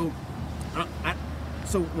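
A man's short, halting speech ("I, I, so") over a steady low background rumble.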